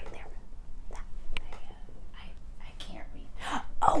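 A woman whispering in soft, breathy bursts, with a slightly louder burst near the end.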